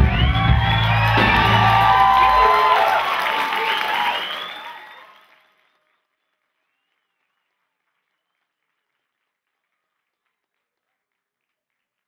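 A live jazz band's last sustained chord, with bass, rings out and stops about two and a half seconds in. The audience keeps applauding and cheering, and this fades out by about five seconds in, followed by dead silence.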